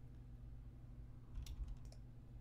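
A few faint, quick clicks from a computer's mouse or keys about one and a half seconds in, over a low steady hum.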